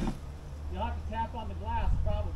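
A muffled, distant voice calling out, over a low steady hum that sets in about half a second in.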